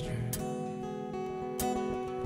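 Acoustic guitar playing sustained chords between sung lines of a song, with a fresh strum just after the start and another about one and a half seconds in.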